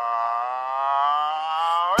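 A long held note in a hip-hop song's break, most likely sung, with no drums or bass behind it, sliding up in pitch at the very end.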